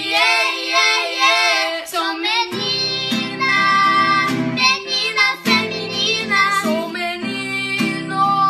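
Children singing together with an acoustic guitar. The guitar drops out for about the first two and a half seconds and comes back in under the voices.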